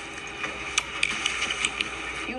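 Sport motorcycle idling with a steady low hum, with a few light, irregular clicks over it.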